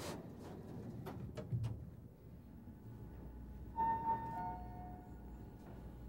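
Elevator chime: two clear tones, the first higher and the second lower, about four seconds in, ringing on faintly afterwards. A few light knocks and shuffles come before it, with a low steady hum underneath.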